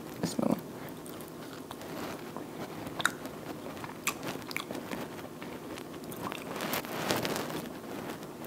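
A person biting into and chewing a piece of baked chicken held in the hands. A few sharp crunches come about three and four seconds in, with a denser spell of them near the end.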